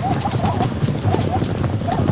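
Rapid, irregular hoofbeats of a zebra galloping flat out to escape a chasing lioness, with short high calls mixed in.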